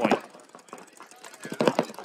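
Faint, rapid popping of paintball markers firing across the field, with a brief voice near the end.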